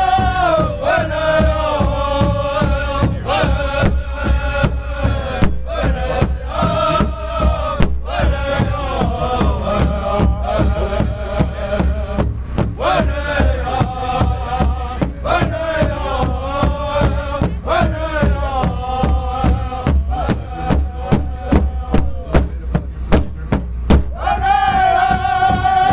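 A pow wow drum group singing high in chorus while beating a large rawhide-headed drum together in a quick, steady beat. Near the end the singing drops away and the drumstrokes carry on alone, sharper and more accented.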